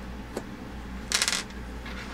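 A blown fuse being pulled from an inline fuse holder: a faint click, then a short rattling scrape about a second in.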